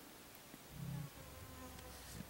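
Insect buzzing close by, a thin steady drone in several tones, with a brief louder low sound just under a second in.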